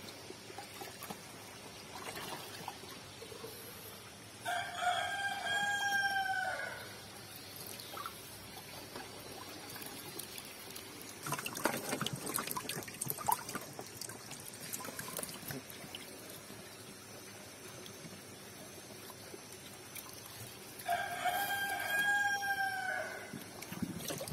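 A rooster crows twice, about four seconds in and again near the end, each call lasting about two seconds. In between, water splashes and sloshes as hands work among catfish crowded in a netted tub.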